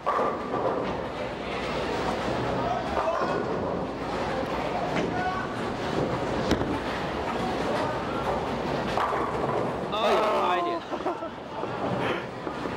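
Bowling alley sounds: a bowling ball released onto the lane with a thud about six seconds in, rolling down the lane and crashing into the pins, over steady alley background noise and voices.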